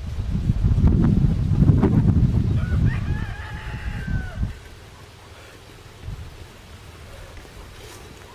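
Wind rumbling on the microphone for the first half. About three seconds in, a rooster crows once, a drawn-out call of about a second that falls slightly at the end. After that there is only a quiet outdoor background.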